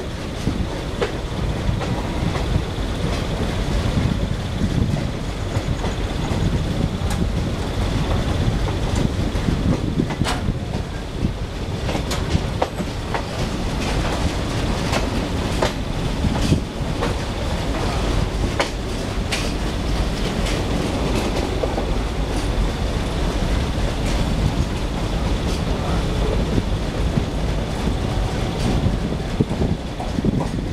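ICF passenger coach running over rail joints and crossover points, heard from its open doorway: a steady low rumble of wheels on track broken by frequent irregular sharp clicks and clatters as the wheels cross the points, with a faint steady high whine.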